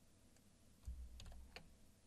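A few faint computer keyboard clicks, about a second in, over a soft low thump.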